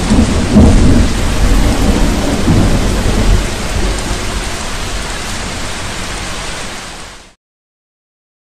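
Heavy rain with rolling thunder, the rumble heaviest in the first few seconds, then fading out and cutting off about seven seconds in.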